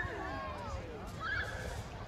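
Faint distant voices calling out in high, gliding pitches. One long falling call comes in the first second and a wavering one near the end, over a low, steady rumble.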